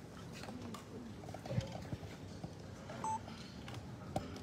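Faint background murmur of people in a large chamber, with scattered light clicks and a short beep about three seconds in.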